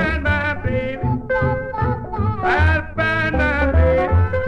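Early-1950s blues recording: a lead melody with bent, gliding notes over guitar and a pulsing bass line.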